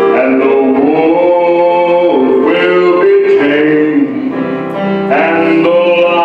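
A man singing a slow gospel song into a microphone, accompanied on electronic keyboard, with long held notes.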